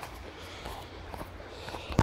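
Walking on a dirt footpath: faint footsteps over a low, steady rumble of wind and handling on the microphone, with a sharp click at the very end.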